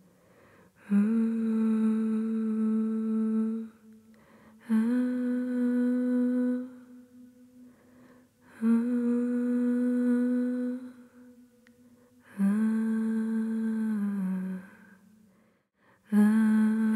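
A voice humming four long, steady notes of about two to three seconds each, with short pauses between them; the last note dips in pitch just before it ends.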